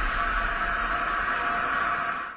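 Steady hissing shimmer with a faint hum: the sustained tail of an outro logo sound effect after its boom.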